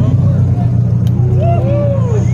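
Mercedes CLS550's V8 engine running steadily with a deep, even rumble, no revving, after a burnout, with faint voices in the second half.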